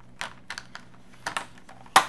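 Light clicks and taps of plastic Tombow dual-tip markers being handled, ending in one sharp, louder click near the end.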